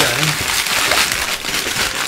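Brown paper wrapping on a large cardboard box being torn and crumpled by hand, a steady rustling and tearing, with a brief voice sound at the very start.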